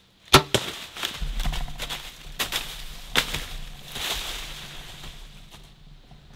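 A bow shot: one sharp crack from the bow firing and the arrow striking the whitetail buck, about a third of a second in. Dry leaves then crash and rustle for several seconds with a few snaps as the hit deer runs off, fading near the end.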